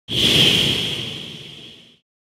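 Logo sound effect: a whoosh that starts suddenly and fades away over about two seconds, with a high ringing tone held through it, then cuts off.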